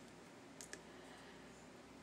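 Near silence, with two quick faint clicks a little over half a second in from tarot cards being shifted and fanned in the hands.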